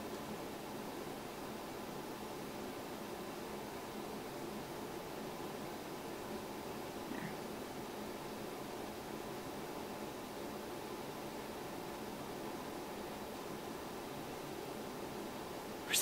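Faint, steady low background noise, even throughout, with a brief faint sound about seven seconds in.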